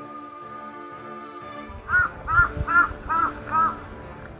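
A crow cawing five times in quick succession, harsh calls about half a second apart, over steady background music.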